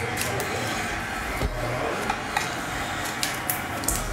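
Foil trading-card pack wrapper crinkling and cards being handled: a few short crackles and rustles over a steady background hiss.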